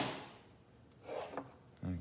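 Hand and paper rubbing and sliding on a drawing board: a soft scrape at the start that fades over about half a second, then another brief rustle about a second in.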